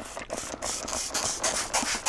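Window tint film crackling and rustling with many small irregular ticks as it is held peeled back off the wet rear window glass.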